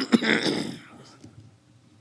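A man coughing into his fist close to a microphone: two harsh bursts at the start, fading away within about a second and a half.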